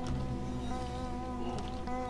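A steady, buzzing drone held on one pitch in the film's background score, over shifting low bass notes.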